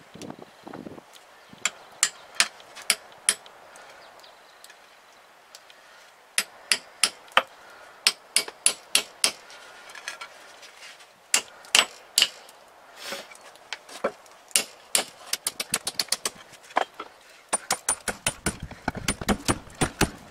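A hammer striking a steel sledgehammer head to drive it down onto its wooden handle: sharp metallic clanks in runs of several blows with short pauses between. The blows come faster and heavier in the last few seconds.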